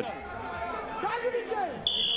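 Arena hubbub of shouting voices, then near the end a short, high, steady whistle blast from the referee as he stops the action on the mat.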